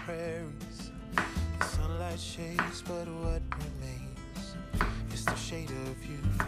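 Chef's knife slicing a peeled sweet potato into thin rounds, each cut ending in a sharp knock on a wooden cutting board, about once a second, over background music.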